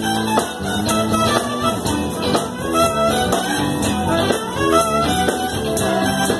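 Live band with a brass section playing an instrumental passage, without vocals: horns, electric guitar and drums over a steady beat, with a tambourine shaken along.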